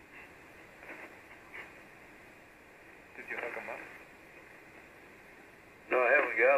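Icom IC-706MKIIG transceiver receiving a 75-metre single-sideband channel between overs: steady band-noise hiss, with a few brief, faint words from a weak station about three seconds in.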